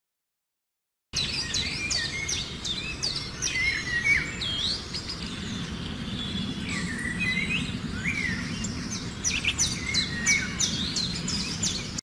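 Several birds chirping and calling in rapid, high-pitched notes over a steady outdoor background hiss, starting abruptly about a second in.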